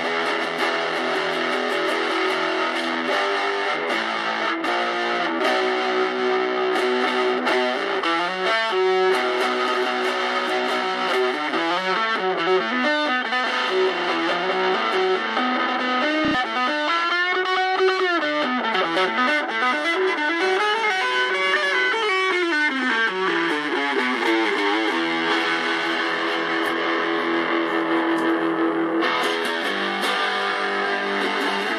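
Electric guitar played through a tiny home-built, battery-powered all-valve combo amplifier with a DL96 output valve, picking sustained single notes and chords. About halfway through comes a run of bent notes that rise and fall in pitch.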